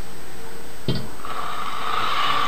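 A click about a second in, then the hand-cranked dynamo of an Evershed & Vignoles 'Wee' Megger insulation tester starts up with a steady whine as its handle is turned, generating the 500-volt test voltage.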